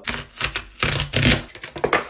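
A cardboard mailer box being opened by hand: a quick run of cardboard scraping, rustling and tapping as the flap is pulled open and the card sleeve slid out.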